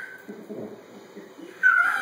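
Baby vocalizing: soft low sounds through the middle, then a loud, high-pitched squeal about one and a half seconds in.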